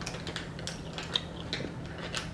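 A scatter of light clicks and taps from makeup products being handled, as a mascara is picked up and readied.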